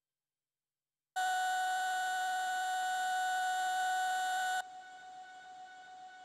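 Electronic synthesizer drone: one steady pitched tone with a hiss over it comes in suddenly about a second in, holds loud for about three and a half seconds, then drops abruptly to a much quieter level and carries on.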